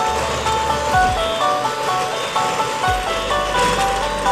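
Toy Christmas train running on its track and playing a tinny electronic tune of simple, evenly stepped notes, with a low rumble that comes and goes underneath.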